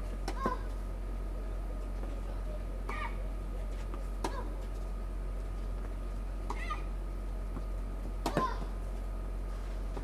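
A tennis rally between two young players on a clay court: the ball is struck five times with sharp racket hits, roughly two seconds apart, over a steady low hum.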